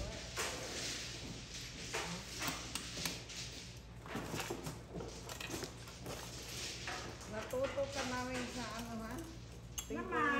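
Mahjong tiles clicking and clacking against each other and the table as players draw and discard, with quiet talking among the players, clearest near the end.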